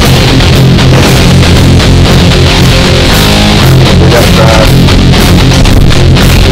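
Loud rock music with guitar and drums, in a heavy-metal style.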